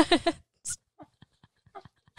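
A woman's short breathy panting gasps, then a brief quiet stretch with a few faint mouth clicks; she is out of breath from overheating.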